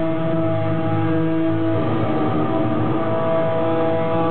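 Heavily distorted electric guitars at a live death metal show holding sustained chords, the chord changing about two seconds in and back again near the end.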